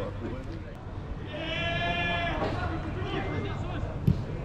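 A single long, flat-pitched shouted call lasting about a second, held on one note, in the middle, from someone on a football pitch, with scattered distant shouts around it.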